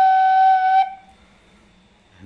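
A khlui, the Thai vertical duct flute, holding one steady note, the tune's final note, which stops just under a second in.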